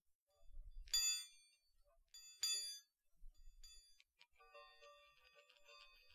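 Chiming Baoding balls (Chinese stress balls) ringing as they are moved. There are two separate chime rings, the louder about a second in and another near two and a half seconds, and from about four seconds an unbroken jangle of overlapping chime tones.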